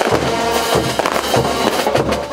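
Festival band playing morenada music with drums, under a dense crackling rattle.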